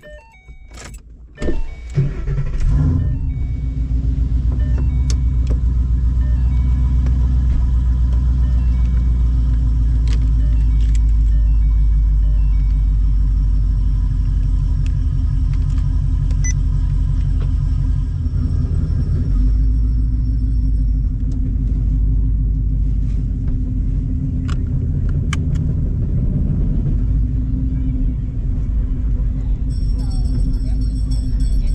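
A Ford Mustang's engine comes in suddenly about two seconds in and then runs steadily with a low rumble, heard from inside the car's cabin. Faint music plays underneath.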